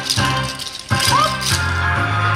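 Wooden naruko clappers rattling in several sharp clacks over a Japanese dance track, most clearly in a short break where the music's bass drops out.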